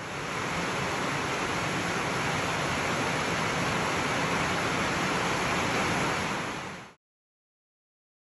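A steady rushing hiss with no tone or rhythm, fading in at the start and cutting off sharply about a second before the end.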